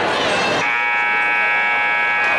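Gym scoreboard horn sounding one steady, buzzing tone that starts about half a second in, over crowd noise. It marks the end of a timeout as the team huddles break up.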